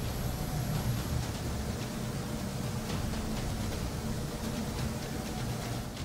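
Steady hiss with a low hum: the room tone of a quiet, darkened house picked up by a camera's microphone.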